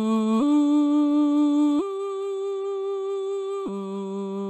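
Alter Ego singing synthesizer, Bones voice, holding one sung vowel across four legato notes from a MIDI keyboard. The pitch steps up twice, then drops low near the end, with no break between notes: the overlapping notes keep the same word and only the pitch moves. Each note is held steady, without vibrato.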